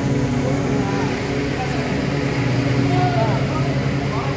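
Steady low hum of factory machinery, with a few faint voices over it.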